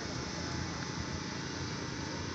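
A pause in the speech filled only by steady, even background noise, with no distinct event.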